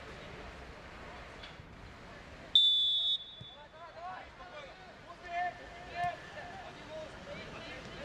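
Referee's whistle, one short shrill blast about two and a half seconds in, signalling the kick-off; players' shouts follow.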